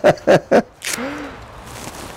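A man laughing, a quick rhythmic run of 'ha-ha-ha' that stops about half a second in, followed by a brief breath and a short low hum.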